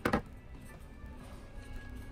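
Soft background music with steady held tones; right at the start, a single sharp snip of scissors cutting off excess thread.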